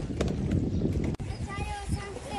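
Low rumble with irregular knocks from a boat moving across floodwater, cut off abruptly a little over a second in; then children's high voices calling out.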